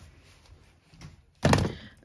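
A single loud thunk about one and a half seconds in: a ring binder being put down on a wooden desk.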